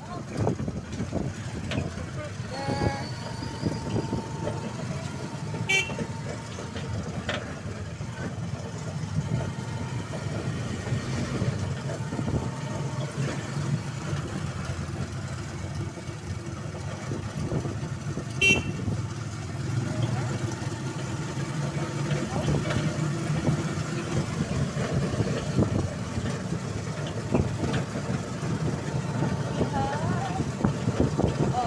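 A motorized tricycle's engine runs with road noise while riding along a town street, heard from inside the sidecar. A vehicle horn sounds for about two seconds near the start, with brief beeps later.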